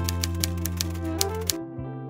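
Rapid typewriter keystroke clicks, about eight a second, over background music with a steady low bass line. The clicks and the bass stop about a second and a half in.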